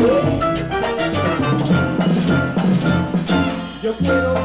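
Live Latin dance orchestra playing, with the drum kit and percussion to the fore. The band drops out briefly just before the end, then comes back in.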